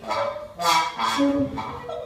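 Live free-improvised ensemble music: a string of short, pitched, rasping bursts, about two a second, the loudest under a second in, with brief held tones beneath them.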